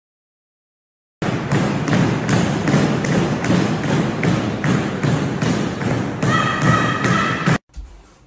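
A fast, steady run of thumps, about three a second, starting a second in and stopping suddenly near the end, with a brief high-pitched tone over the last second of it.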